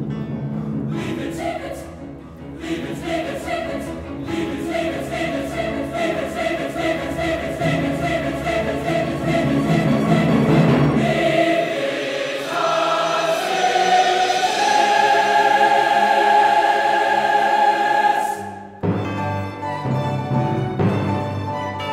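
Large mixed choir singing with instrumental accompaniment. A rhythmically pulsing passage gives way about halfway through to long, high held chords. These break off abruptly near the end before the music starts again.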